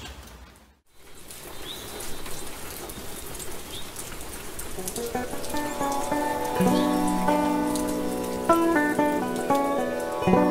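Steady rain ambience with a couple of faint bird chirps. About halfway through, the song's intro music fades in over it, held notes growing louder.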